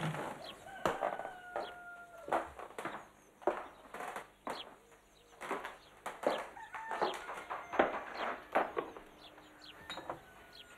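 Birds calling repeatedly, with short falling calls every half second or so and a few longer held calls among them.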